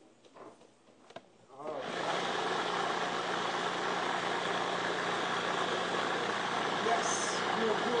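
Food processor motor starting about two seconds in and then running steadily with a low hum. It is blending a thick batter of ground flaxseed meal and olive oil.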